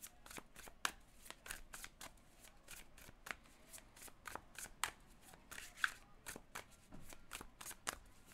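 A deck of tarot cards being shuffled by hand: a quiet, irregular run of soft card clicks and flicks, several a second.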